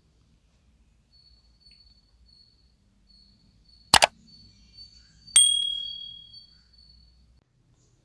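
Subscribe-button sound effect: a single sharp click about halfway through, then a high bell ding about a second and a half later that rings out and fades over about a second.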